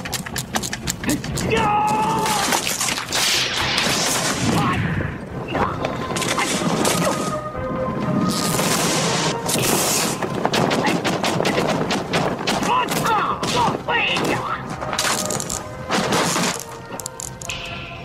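Kung fu film fight soundtrack: music with a rapid string of sharp hits and thuds and swishing bursts of noise from the fight's sound effects.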